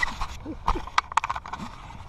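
Handling noise from a handheld camera being grabbed and turned: a few sharp knocks and clicks, about three close together in the middle, over faint rubbing.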